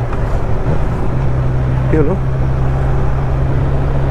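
Motorcycle cruising at a steady speed of about 45 km/h: the engine holds an even low hum under constant wind and road noise.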